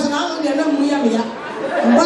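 A woman's voice speaking into a microphone, carried over a PA in a large hall, in a language the transcript did not capture.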